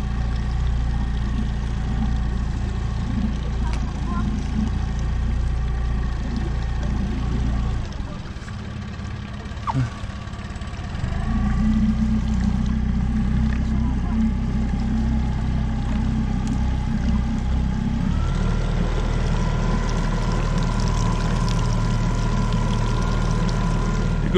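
Small outboard motor running steadily as the boat moves through the water, with water washing past. About a third of the way in it drops to a quieter, lower note for a few seconds, with one short knock, then picks up again; its note shifts once more just past the two-thirds mark.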